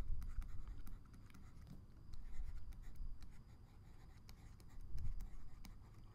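Stylus writing on a tablet: faint scratching strokes and light ticks in several short spells as words are written out.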